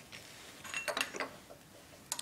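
A glass spirit burner being moved and set down on a laboratory bench: a few light clinks and knocks about a second in.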